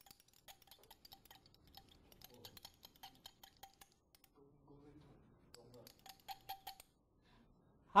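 Stirring rod clinking against the inside of a small glass beaker while an oil-and-water mixture is stirred: rapid, faint ticks with a slight ring, pausing briefly about halfway.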